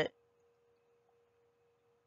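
Faint, steady ringing tone of a Tibetan singing bowl, held on one pitch with a fainter higher overtone.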